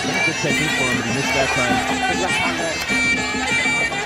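Traditional Muay Thai fight music (sarama): a Thai pi reed oboe plays a continuous, wavering, nasal melody over the ring accompaniment.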